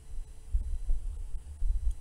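A pause in speech filled by an uneven low rumble with soft thumps, over a faint steady hum.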